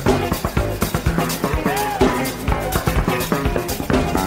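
Blues band playing an instrumental passage: electric guitar over bass and drum kit, with one bent guitar note about halfway through.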